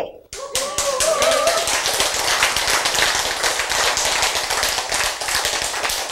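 An audience applauding: many hands clapping densely and evenly, with a brief voice in the first second or so.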